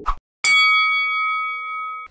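A single bright metallic ding, like a struck bell or chime, used as a logo sting. It sounds about half a second in, with several clear tones ringing together and fading slowly.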